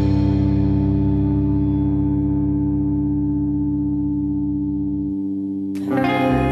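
A held distorted guitar chord with echo rings out after a rock passage, slowly fading and losing its brightness. New music comes in sharply just before the end.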